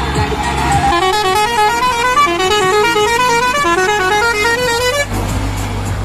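Multi-tone musical vehicle horn playing a quick stepping tune for about four seconds, starting about a second in. Background music with a heavy bass runs underneath.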